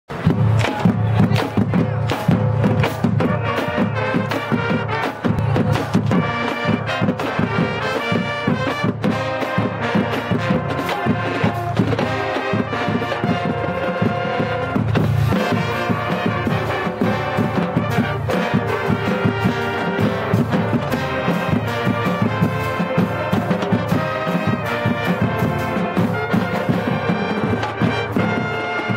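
High school marching band playing: trumpets and other brass, including sousaphones, carrying the tune over drums keeping a steady beat.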